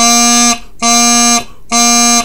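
Highland bagpipe practice chanter playing a series of separate A notes, three of them at the same steady pitch, each about half a second long with short breaks between.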